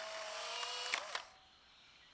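Instant camera sound effect: a short motor whir as the print is ejected, stopping with a small click about a second in and giving way to near silence.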